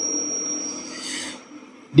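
A pause in amplified speech through a microphone and loudspeakers: the tail of the last word dies away with a thin high ringing tone and a low hum, followed by a short breath-like hiss about a second in, then near-quiet room tone.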